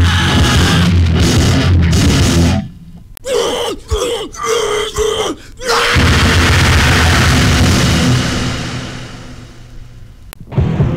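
A hardcore punk recording with distorted guitars and drums. About two and a half seconds in the band drops to a short stop-start break of pitched notes, then crashes back in and fades out near the end.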